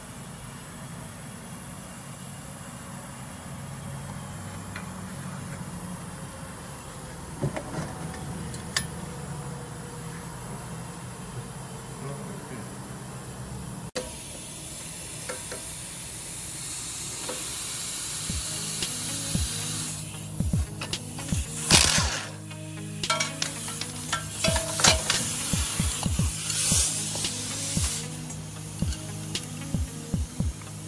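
Hand tools working the strut-to-knuckle bolts on a car's front suspension with a socket and breaker bar. A low steady hum with a few metal clicks runs through the first part. About halfway through there is a hiss, then a run of sharp metallic clicks and clanks.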